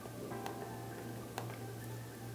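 Faint background music of held tones over a low steady hum, with two computer-mouse clicks about a second apart.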